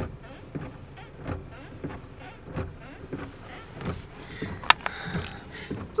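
Faint, irregular knocks and rustling inside a parked car, with two sharp clicks a little before the end.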